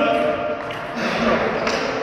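An indistinct man's voice, first a drawn-out steady hum and then murmuring, in a large echoing sports hall, with one light tap near the end.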